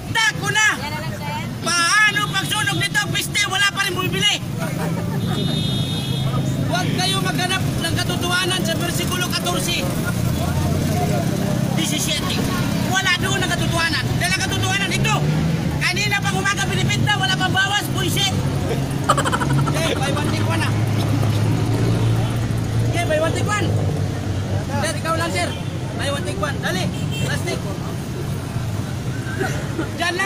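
Busy street ambience: a steady rumble of road traffic under a man's voice and crowd chatter.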